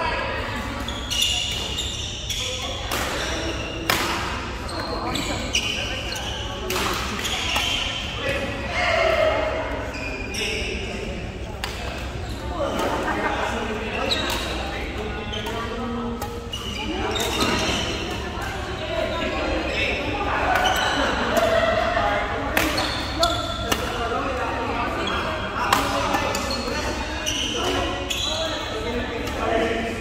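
Badminton rackets striking a shuttlecock in doubles rallies: sharp hits at irregular intervals throughout, echoing in a large sports hall over a steady background of voices.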